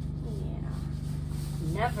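A steady low hum with a fast, even flutter runs throughout. A woman starts speaking near the end.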